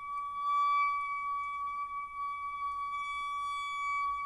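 A toilet's water inlet singing: a steady, high, pure tone with overtones, growing a little louder in the first second. Water flowing through the metal supply pipe where it touches the plastic cistern sets up this resonant hum. The owner cannot explain its cause.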